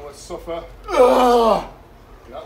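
A man's strained grunt of effort during a cable pull, one loud vocal push about a second in that falls in pitch, after short gasping breaths.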